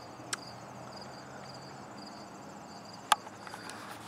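Crickets chirping faintly in an even rhythm, about two chirps a second. A sharp click comes about three seconds in as the camera is handled.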